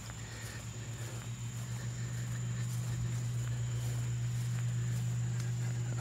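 Outdoor summer ambience: a steady low hum with a thin, steady high insect whine above it, and faint soft steps on grass.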